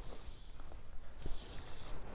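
Fly line swishing through the air as a light fly rod is cast, two soft whooshes a little over a second apart before the line lands on the water.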